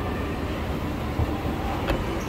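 A moving escalator and the surrounding mall give a steady low rumble. One sharp click comes just before the end.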